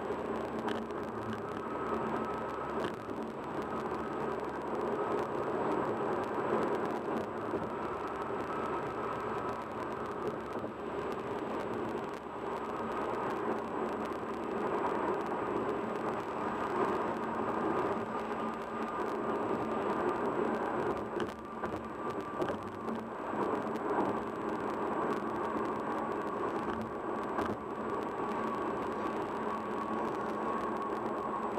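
Steady road noise of a car driving at highway speed, heard from inside the cabin: an even rush with a faint constant hum under it.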